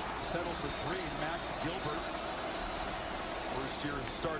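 Football game broadcast playing faintly in the background: a commentator's voice over a steady wash of stadium crowd noise.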